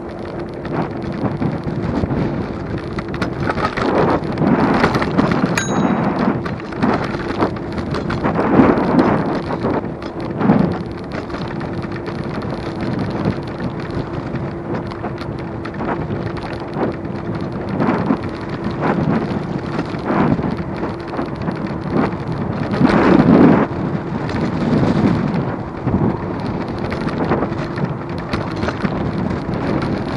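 Wind buffeting the microphone of a camera on a moving electric scooter, in rumbling gusts that swell and ease every few seconds. Under it runs a steady hum from the scooter's electric motor, with a short high beep about six seconds in.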